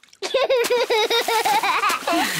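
Cartoon child voice laughing in a quick run of high giggles, with splashing water.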